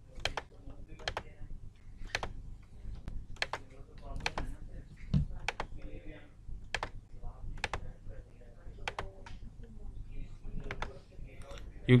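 Clicks of a computer mouse and keyboard as entries are picked from drop-down lists: single sharp clicks at an uneven pace of about one or two a second, over a low steady hum.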